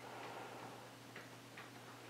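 A few faint, irregular clicks of a tofu carton being handled and worked open by hand, over a faint steady hum.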